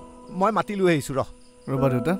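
A man speaking in two short phrases over a steady sustained musical drone, with crickets chirping in the background.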